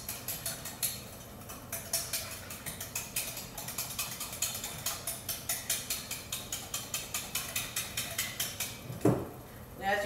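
Wire whisk beating milk and instant pudding mix in a glass batter bowl, clicking against the bowl about three to four strokes a second as the pudding starts to thicken. A single thump near the end.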